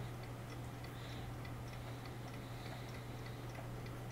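Faint, regular light ticking over a steady low hum.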